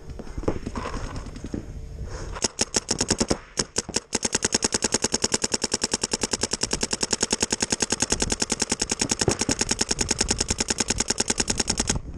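Paintball marker firing rapid, evenly spaced shots at close range: a few short bursts starting about two seconds in, then a continuous stream of fire for the last eight seconds.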